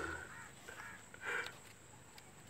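A bird cawing: one short harsh call right at the start and another about a second and a half later.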